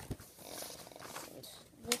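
Loose sheets of paper rustling and shuffling as they are handled in a folder, with a few small clicks and knocks.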